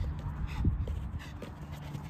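Football being dribbled with the right foot on artificial turf: a series of short taps from the ball touches and footsteps, the loudest about two thirds of a second in, over a low rumble of wind on the microphone.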